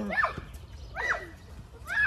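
A high-pitched voice shouting "run!" three times, about a second apart, each shout rising and then falling in pitch.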